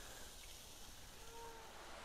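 Near silence: faint outdoor background hiss, with one faint, brief steady tone about two-thirds of the way through.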